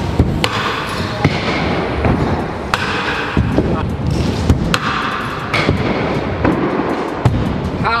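Stunt scooter wheels rolling over concrete skatepark ramps, with several sharp knocks as the wheels and deck hit the surface.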